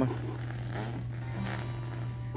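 A steady low hum, with faint voices in the background.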